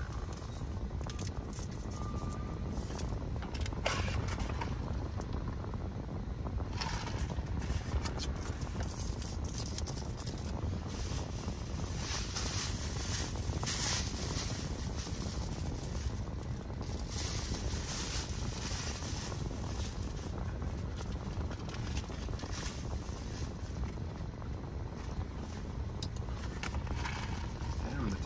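Thin plastic carry-out bag rustling in bursts as it is handled and rummaged through, loudest about halfway. Under it, a steady low rumble in a car cabin.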